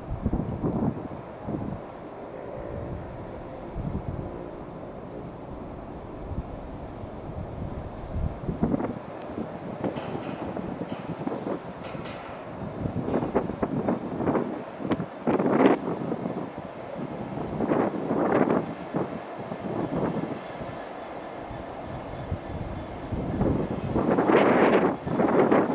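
Freightliner Class 66 diesel-electric locomotive (EMD two-stroke V12) running at low speed as it approaches with a train of wagons. Wind buffets the microphone in uneven gusts, louder in the second half.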